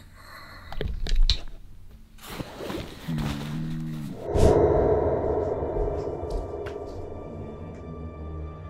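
A recorded snoring sound played from a phone, one snore about three seconds in, among a few soft handling thumps. About halfway a thud comes, and a steady background music bed swells in and carries on.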